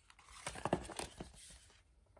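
Rustling and light scraping with a few small clicks as a collector's book is slid out of its plastic slipcase and opened up by hand.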